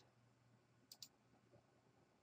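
Near silence, with a close pair of faint computer mouse clicks about a second in.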